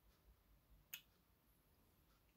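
Near silence with faint low background rumble, broken once by a single short sharp click about a second in.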